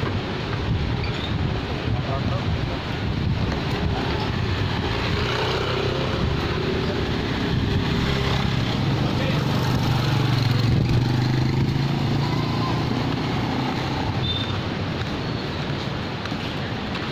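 Outdoor promenade ambience: background voices of people over a steady noise bed, with a motor vehicle engine that swells to its loudest about two-thirds of the way through and then fades.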